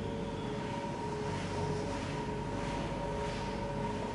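Steady hum of an apartment's central air conditioning: a low rumble with a faint, even whine over it.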